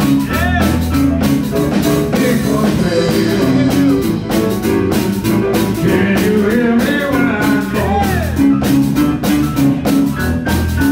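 Live blues band playing with a steady beat: electric guitar, electric bass, drum kit and keyboard, with bending melody lines over the rhythm.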